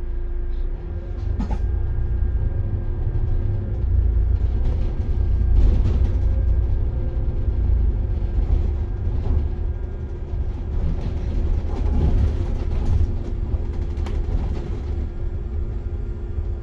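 City bus in motion, heard from inside the cabin: low engine and road rumble with a steady hum, swelling and easing a little as it drives.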